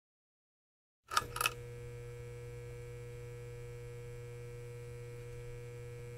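Silence for about a second, then two sharp clicks followed by a steady electrical hum: a low buzz with faint higher tones held over it.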